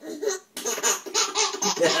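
A baby laughing in quick, repeated bursts, tickled by a cat licking its toes.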